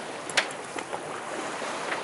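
Wind and water rushing past a sailboat under way in choppy open water, a steady noise with no engine running. A single light click about half a second in.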